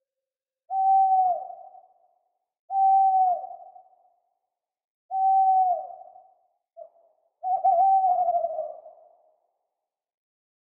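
Owl hoots with heavy echo: four single notes, about two to two and a half seconds apart. Each holds one steady pitch, then dips at its end and trails away in a long echo. A brief extra note comes just before the last, longer one, which wavers.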